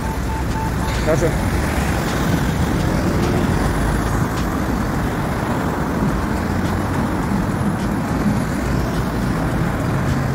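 Road traffic on a city street: cars passing close by in a steady, loud rumble of engines and tyres. A brief steady beep sounds at the very start.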